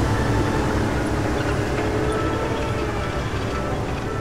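Deep, evenly pulsing rumble of NASA's tracked crawler-transporter rolling along, with music held underneath.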